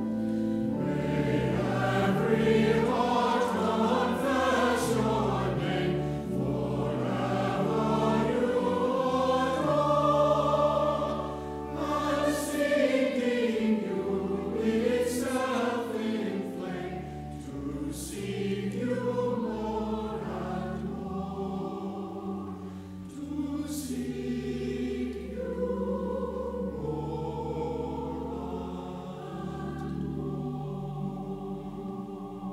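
Church choir singing, with steady low notes held beneath the voices.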